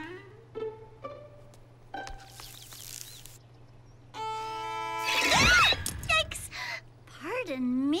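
A violin played by a beginner: a single bowed note held for about a second, then breaking into a loud scraping screech, the loudest sound here. A short vocal glide follows near the end.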